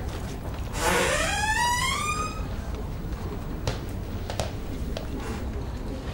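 A door latch released and the door hinge creaking open in one rising squeak of about a second and a half, followed by three short sharp clicks, over a low steady hum.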